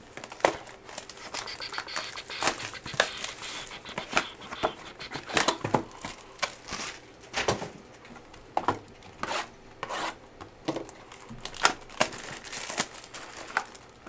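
Plastic shrink wrap and packaging of a Bowman Chrome baseball-card hobby box being torn open and handled, in a string of irregular crinkles, crackles and short rips.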